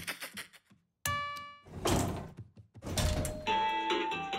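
Cartoon sound effects: a few quick taps, then a single bright elevator-bell ding about a second in that rings out briefly. Two whooshing thumps follow, like elevator doors, and light music starts near the end.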